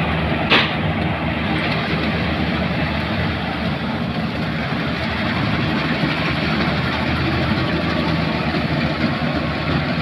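Tracked paddy combine harvester running steadily while harvesting rice, its engine and machinery a constant drone. A single sharp click about half a second in.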